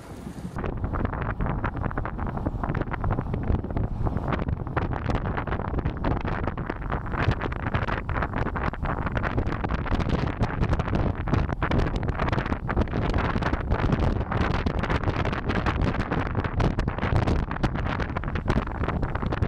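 Wind buffeting the microphone of a DJI Action 2 action camera worn on a cyclist's jersey while riding a road bike: a steady rushing noise, heaviest in the low end, with constant gusty flutter.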